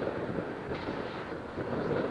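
Steady background rumble of an active rail yard, an even noise with no distinct clanks or horns.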